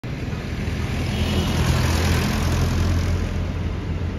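Street traffic: a steady low rumble of engines and tyres, swelling as a vehicle passes close by in the middle and then easing off.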